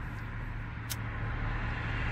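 A car's engine idling, heard from inside the cabin as a steady low hum, with one short click about a second in.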